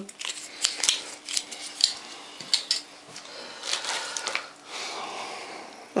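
Light clicks and clatter of small plastic cutlery being handled and set down, with short rustling of packets in a cardboard box partway through.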